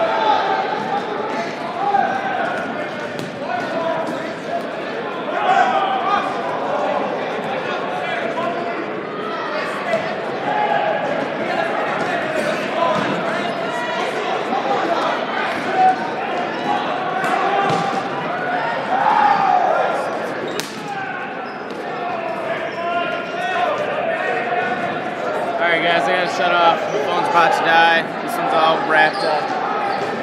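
Dodgeball play in a large hall: balls bouncing and smacking off the floor and walls at irregular moments amid a steady din of players' and spectators' shouting, which grows busier near the end.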